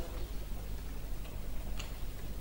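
Room tone in a lecture hall: a steady low hum with a few faint short ticks, the clearest near the end.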